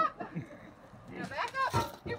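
A person's voice: a short sound right at the start and a few brief vocal sounds about a second and a half in, with a quiet stretch between.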